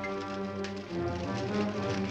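Orchestral film score, with brass holding sustained chords that change about a second in.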